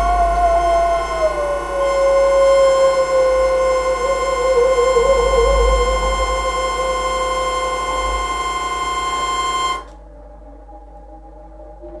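Improvised live electronic music: held synthesized tones, one sliding down in pitch and wavering before it settles, over a steady higher tone and a bed of faint high tones. About ten seconds in most of it cuts off suddenly, leaving quieter held tones.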